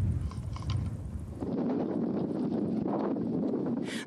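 Military helicopters firing a salvo of rockets: a deep rumble with a few sharp cracks. About a second and a half in it changes abruptly to a steadier rushing noise.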